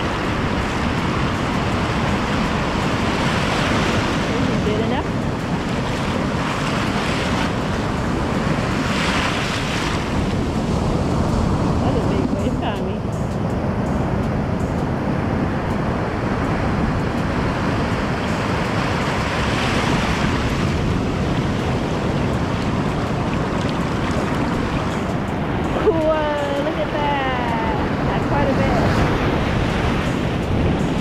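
Ocean surf washing in around the feet in the shallows, rising and falling in surges as each wave runs up and drains back.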